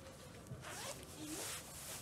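A zipper pulled twice in quick succession, two short rasping strokes, with faint voices in the background.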